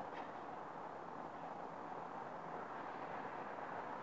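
Faint, steady background noise with no distinct events: room tone.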